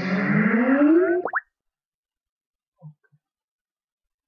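Skype sign-in notification sound: a rising electronic tone lasting about a second and a half that ends in a quick upward sweep. A faint short blip follows near the three-second mark.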